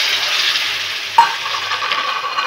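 Water poured into a hot, oiled wok of frying vegetables and dal, sizzling loudly and slowly dying down as the oil cools. About a second in there is a sharp knock of the spatula against the wok, then stirring through the bubbling water.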